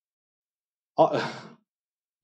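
A man's short exclaimed "ah" that trails off into a breathy laugh about a second in.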